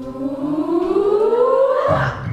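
Voices singing one long rising glide, like a siren, that stops just before the end.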